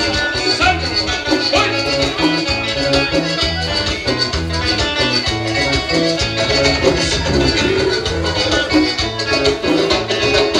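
Latin dance music played loud over a DJ's party sound system, with a steady repeating bass line.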